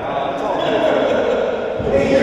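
Indistinct men's voices ringing in a hard-walled racquetball court, with a dull low thud near the end.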